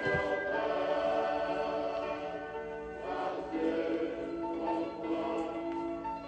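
A choir singing a religious hymn with long-held notes.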